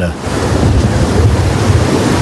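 Steady rush of wind and sea waves, loud and unbroken, with a heavy low rumble.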